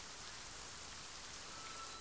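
Faint, steady rain falling as a soft, even hiss. A thin steady tone comes in near the end.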